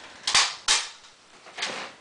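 Paper handling: two short, sharp rustles about a third and two-thirds of a second in, then a fainter one near the end, as a note card is pulled out and handled.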